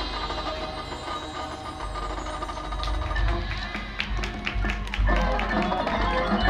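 High school marching band playing, with the front ensemble's mallet percussion striking quick notes among the held pitches. The music grows louder about five seconds in.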